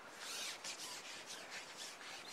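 Faint rustling and rubbing of handling as a pole angler plays a hooked fish on his pole, hands, clothing and pole sections moving against each other.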